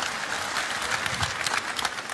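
Large audience applauding, a dense steady patter of many hands clapping.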